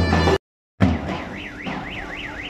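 Davul drum and zurna street music that cuts off suddenly less than half a second in, followed by a short silence, then a high warbling tone like a car alarm, rising and falling about three times a second over a low drum beat.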